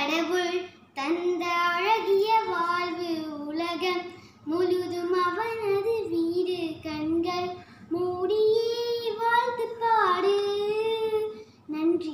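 A young girl singing solo and unaccompanied, in four long held phrases with short breaks for breath between them.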